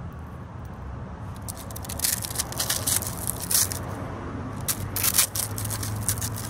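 A crispy, flaky black crust crackling and crumbling as fingers press and pick at it, with a run of sharp crackles starting about two seconds in. A steady low hum runs underneath.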